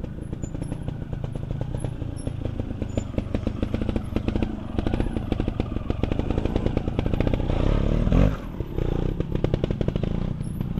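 Trials motorcycle engine running at low revs close by, its firing pulses even and quick. About eight seconds in it revs up sharply to a loud burst of throttle, then drops back.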